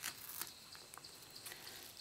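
Faint soft rustling and a few light ticks as a packing-tape-and-cardboard stencil is peeled off a t-shirt.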